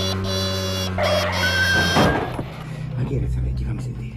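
Film soundtrack: a sustained music chord held for about two seconds that cuts off suddenly with a thump, followed by a quieter stretch with a faint voice.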